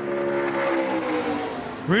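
A NASCAR race truck's V8 engine running, a single pitched drone whose pitch falls steadily for about a second and a half, over a hiss.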